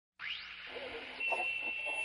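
A faint hiss with a steady high-pitched beep-like tone that comes in about halfway through, over faint distant voices.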